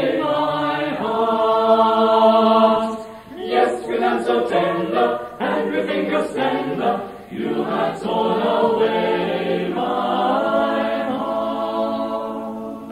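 Choir singing a cappella in held chords, with brief breaks between phrases about three and seven seconds in, and the sound fading near the end.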